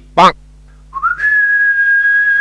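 A brief loud burst right at the start. Then, about a second in, a single whistled note that slides up quickly and then holds steady.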